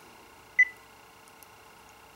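A single short, high beep from the Korg Kronos touchscreen as its OK button is pressed, confirming the load of a DX7 patch bank, over a faint steady hum.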